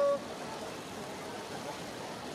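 Steady outdoor street and crowd noise with faint voices. A brief steady tone, the loudest sound here, cuts off just after the start.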